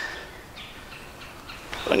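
Quiet woodland ambience with a few faint, short bird chirps.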